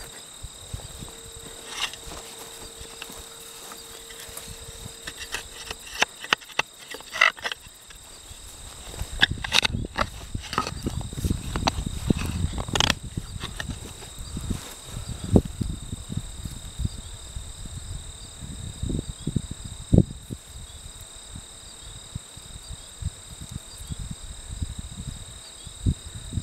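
A garden fork digging in soil among potato vines, with scraping, rustling and scattered knocks, heaviest in the middle stretch. Crickets keep up a steady high trill underneath.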